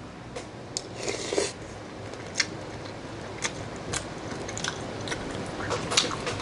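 A person chewing a mouthful of noodles, with scattered small clicks and mouth noises.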